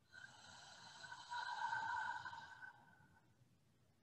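A woman slowly releasing a deep breath out through the mouth, a breathy rush that grows louder about a second in and dies away before three seconds.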